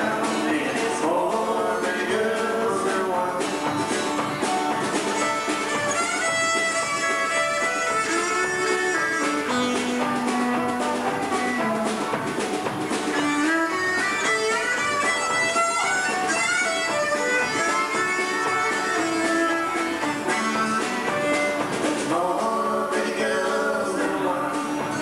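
A live country band playing, with electric and acoustic guitars leading over a drum kit's steady beat.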